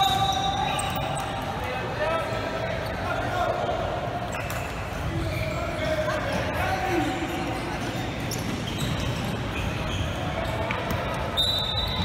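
Echoing indoor futsal game: a ball thudding and bouncing on the hard court amid voices calling out from players and the sideline. A short high referee's whistle blast sounds at the very start and again near the end.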